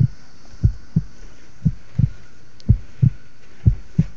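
Rap beat with a deep bass kick drum hitting in pairs about once a second, over a steady hiss.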